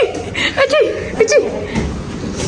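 A woman chuckling in short bursts, mixed with a few spoken words.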